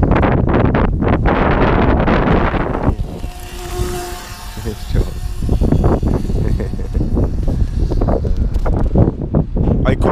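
Wind buffeting the camera microphone: a heavy, gusty low rumble, with a brief steady whine about three to four seconds in.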